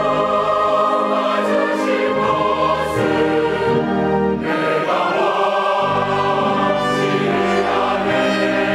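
Mixed church choir of men and women singing a Korean hymn in long held notes, accompanied by an orchestra with strings.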